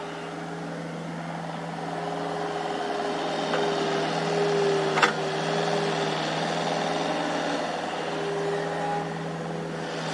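Excavator diesel engines running while digging, the engine note rising and falling with the work. One sharp clank comes about halfway through.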